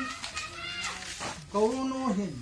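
A man's voice speaking in long, drawn-out syllables, with a fainter, higher-pitched sound between two of them.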